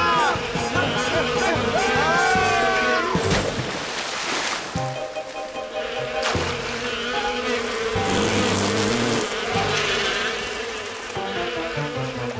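Cartoon sound effect of a swarm of bees buzzing, a steady drone that runs under light background music, with a few sliding, gliding sounds in the first three seconds.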